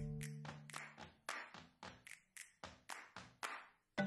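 Background music in a sparse passage: the held notes drop out, leaving a steady rhythm of light claps or taps, about three a second. The held notes come back at the very end.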